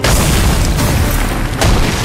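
Film sound effects of ice pillars shattering: a sudden heavy boom at the start and a second crashing hit about a second and a half in, with flying debris noise between them.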